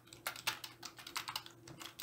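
Computer keyboard being typed on: a quick run of fairly quiet keystrokes as a word is typed out.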